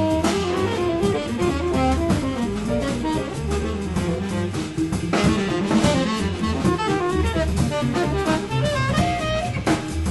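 Live small-group jazz: a tenor saxophone plays a moving melodic line over upright bass and drum kit.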